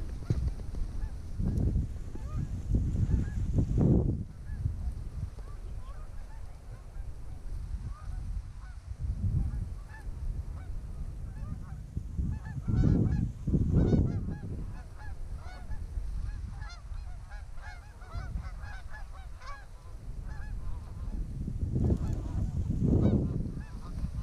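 Canada geese honking over and over as a flock comes in toward the decoys, the calls thickening in the second half. Several louder low rushes of noise come and go underneath.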